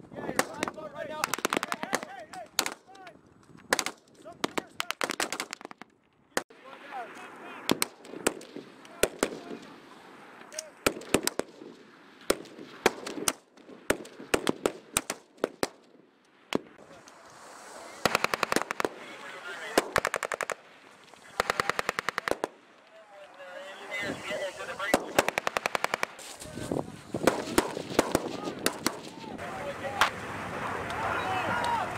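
Small-arms fire from a squad of Marines' rifles: many single and quick shots through the first half, then long rapid automatic bursts about two-thirds of the way through.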